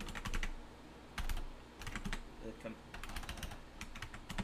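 Computer keyboard typing: keystrokes come in four short quick runs with pauses between them.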